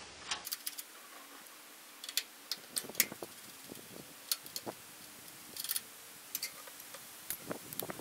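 Hand wrench clinking against the welder's three-quarter-inch output lug nuts as they are worked: scattered sharp metallic clicks and taps, some in quick little runs.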